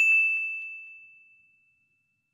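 A single bright bell-like 'ding' sound effect, struck once and ringing on one high tone that fades out over about a second and a half.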